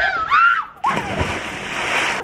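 A brief voice, then water splashing around a swimmer in the sea for over a second, starting suddenly about a second in.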